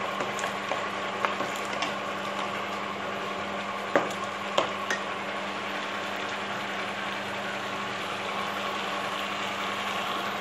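Onion-tomato mixture boiling hard in a hot pan, a steady bubbling sizzle with a faint steady hum under it. A couple of sharp clicks come about four seconds in.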